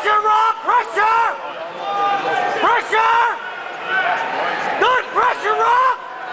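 Spectators shouting at a cage fight: a string of short, loud, high-pitched yells over steady background arena noise.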